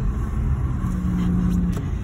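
Road and engine noise inside a moving Hyundai car's cabin: a steady low rumble, with a brief steady hum through the middle.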